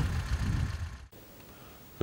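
Outdoor street background noise with a low rumble of traffic, fading down over about a second and then cut off abruptly, leaving only a faint hush.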